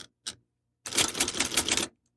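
Typewriter sound effect: a single key strike early on, then a quick, dense run of typewriter keystrokes from about a second in.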